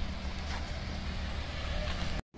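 A motor vehicle engine running steadily, a low rumble with a faint tick about half a second in.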